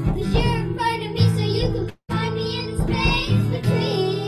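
Young girls singing a slow pop ballad, accompanied by strummed acoustic guitar. The sound drops out for an instant about halfway through.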